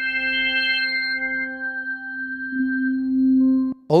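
Yamaha reface YC combo organ holding one sustained note while its drawbars are moved: the upper overtones drop out one after another, and the tone thins to a near-pure, flute-like note that swells about two-thirds of the way through. The note cuts off suddenly near the end.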